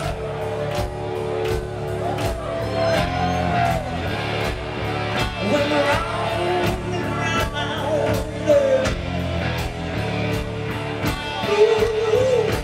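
Live rock band playing: electric guitars, bass guitar and a drum kit keeping a steady beat, with a singer's voice rising over it now and then.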